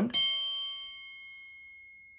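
A small metal percussion instrument is struck once and rings out with a bright, high tone that fades slowly. It is played in place of the name "Ping" in the story.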